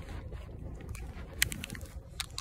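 Handling noise on a handheld phone: rustling and light clicks over a steady low rumble, with one sharper click about one and a half seconds in.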